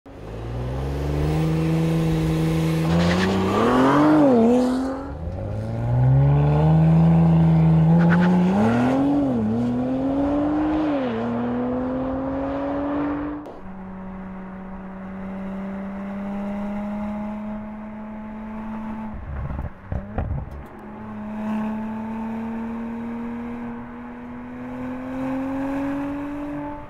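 Audi RS 4 Avant Competition Plus's twin-turbo V6 under hard acceleration in two runs, its note climbing through the gears with a quick drop in pitch at each upshift. From about halfway it settles to a quieter, steadier engine note that rises slowly.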